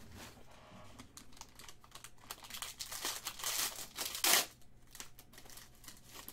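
Foil wrapper of a trading-card pack crinkling as it is torn open by hand, the crackle building and peaking in one loud rip a little after four seconds in.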